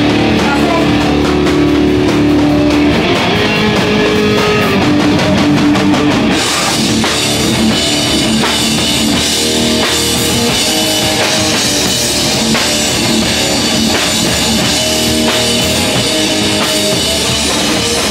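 Hardcore punk band playing live, loud: a distorted guitar and bass riff for about the first six seconds, then the drums and cymbals come in with the full band.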